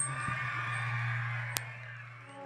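Crowd cheering in a concert hall, fading out, over a steady low hum from the sound system, with a single sharp click about one and a half seconds in.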